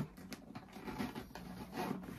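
Black leather Valentino backpack being handled: the flap lifted and the leather rubbing and shifting, with a sharp click at the start and scattered soft rustles.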